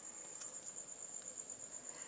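A faint, steady, high-pitched tone held without a break over a low hiss, stopping just after the end.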